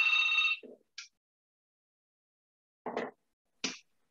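A short electronic chime, a steady bell-like tone of several pitches, stops about half a second in. Silence follows, broken by two brief faint sounds near the end.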